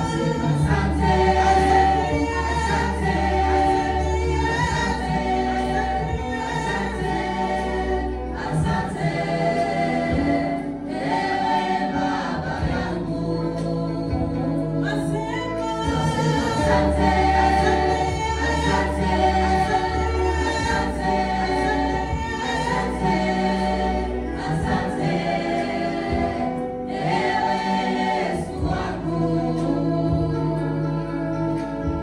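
Gospel choir of mixed voices, mostly women, singing a hymn into microphones through the church sound system, with long low bass notes held underneath that change every few seconds.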